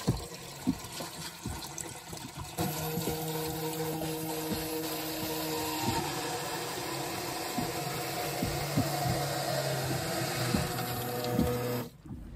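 Water poured from a bucket splashing into a boat's shower sump box. About two and a half seconds in, a small Rule electric sump pump starts with a steady hum and keeps running under the splashing: the float switch has lifted and switched the pump on.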